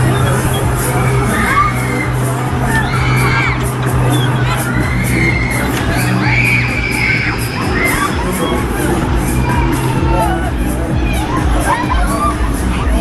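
Riders screaming and shouting as they are spun around on a Breakdance fairground ride, over loud ride music with a steady beat and a constant low hum.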